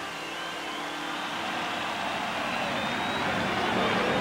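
Steady rushing noise of heavy rain over a huge outdoor crowd, slowly growing louder.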